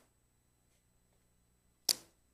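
A quiet room with a faint low steady hum, then one sharp, short click near the end.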